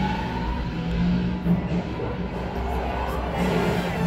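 The train ride's show soundtrack playing through the compartment speakers: sustained orchestral music, with a rushing noise that swells near the end.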